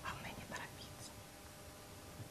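Singing bowl rubbed around its rim with a wooden stick, giving a faint, steady ringing of several tones at once.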